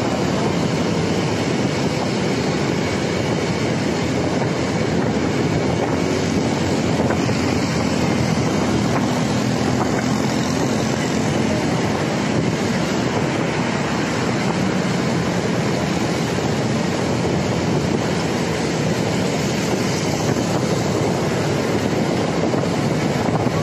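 Steady rush of wind and road noise from riding along a city road in traffic, with engine rumble underneath.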